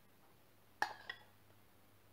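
Two light clinks of a metal spoon against kitchenware a little under a second in, a quarter second apart, each with a brief ring, as sugar is spooned from a glass bowl into a small stainless steel pot.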